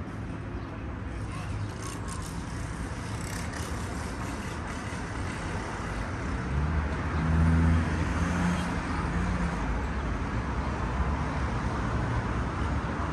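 City street traffic noise, with one vehicle's engine passing close by. It swells to its loudest about seven to eight seconds in, then eases.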